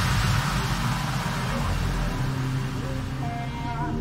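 Background music: an electronic track's noisy wash fades out over low sustained tones, and a softer track of plucked-sounding melodic notes comes in near the end.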